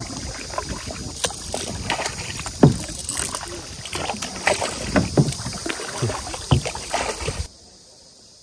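Kayak paddle blades dipping and splashing in the water, with water slapping close around the kayak, in uneven strokes over a steady rush of water. The sound cuts off suddenly near the end.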